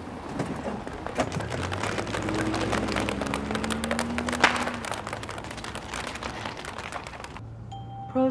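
Tin cans tied behind a car clattering and scraping along the road as it drives off, a dense irregular rattle over the car's engine. The clatter stops abruptly near the end.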